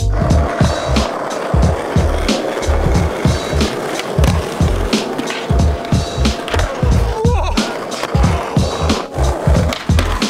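Skateboard wheels rolling on concrete, with clicks and scrapes from tricks on a ledge, under music with a heavy, steady bass beat.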